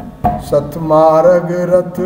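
A man singing a Hindi devotional bhajan, coming in about half a second in and holding one long note, just after a drum stroke.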